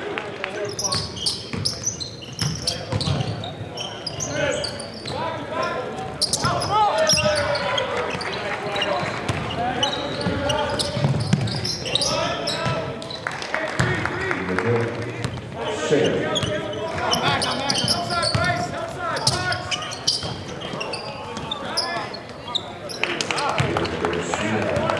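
Basketball game sounds: a ball bouncing on a hardwood court under a steady mix of voices calling and shouting, with many short knocks and clicks.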